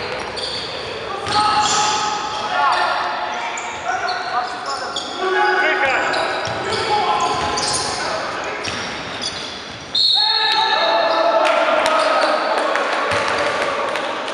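Basketball game in a reverberant sports hall: a ball bouncing on the wooden court, short high squeaks of sneakers, and players' shouts. The sound turns suddenly louder about ten seconds in.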